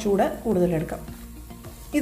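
Chopped garlic and cumin seeds sizzling in hot oil in a nonstick pan while being stirred with a wooden spatula; the sizzle is quieter in the second half.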